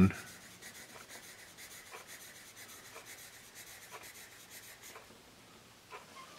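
Tombow Mono 100 B graphite pencil writing cursive loops on paper: a faint, soft scratching from a smooth, quiet pencil, with light strokes about once a second that stop near the end.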